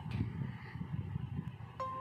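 Low, fluttering rumble on the microphone of a hand-held camera carried outdoors on a walk, like wind or handling noise. Music starts near the end.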